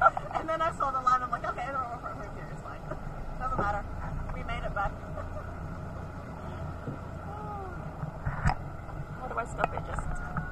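A woman laughing, most strongly in the first couple of seconds, with bits of laughter and voices after that. Underneath is a steady low rumble, and a sharp click comes near the end.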